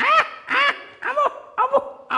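A run of about five short, quack-like comic squawks, each rising and then falling in pitch, the first the loudest.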